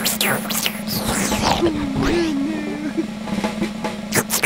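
Sound effects of the Noo-Noo, the Teletubbies' vacuum-cleaner character: a steady motor hum with swooping sucking whooshes, and a short wavering tone in the middle, over background music.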